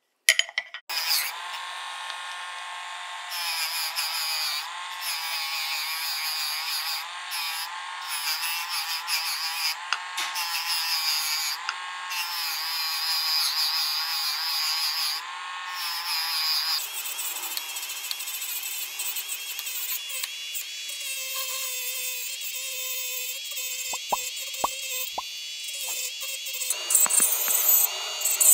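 Handheld rotary tool spinning a small polishing wheel against a metal pocket-watch bezel: a high motor whine whose pitch wavers as the wheel is pressed on and eased off.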